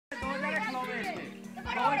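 Boys shouting and calling to each other during an outdoor ball game, over background music with a steady low tone. Two soft low thumps come in, one near the start and one past the middle.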